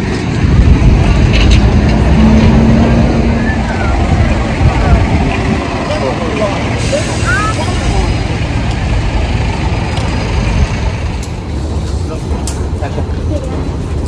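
Steady low rumble of a road vehicle or traffic, with faint voices in the background.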